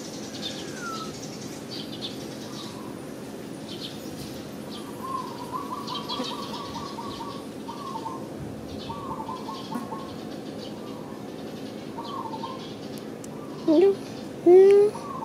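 Birds calling outdoors: scattered chirps and short whistled phrases, with a quick repeated trill about five seconds in, over a steady low hum. Shortly before the end comes a brief, much louder rising call.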